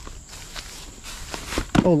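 Faint footsteps through grass, with a man's loud call of "Oh" near the end.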